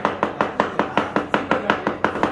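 Hammer striking a laminated plywood frame in quick, even blows, about four or five a second.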